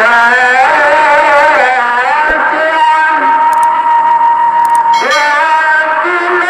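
Tarhim, the Islamic pre-dawn chant sung in Ramadan at sahur time ahead of the dawn call to prayer: a single voice singing an ornamented mawal-style Arabic line. One long note is held from about three to five seconds in, and then a new phrase begins.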